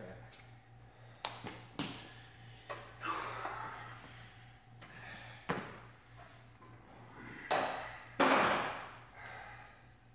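Scattered knocks and clanks of gym equipment as a lifter settles onto a flat bench under a loaded barbell in a squat rack, with a louder breathy rush near the end.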